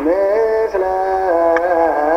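Ethiopian Orthodox wereb hymn sung in long held notes that step and slide from one pitch to the next.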